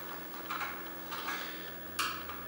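A hand screwdriver turning a small screw out of a diaphragm air pump's head. There are faint ticks and scrapes, and a sharp click near the end.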